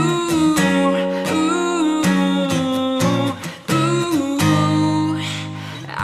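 Acoustic guitar strummed in a steady rhythm, with a male voice singing held, sliding notes over it.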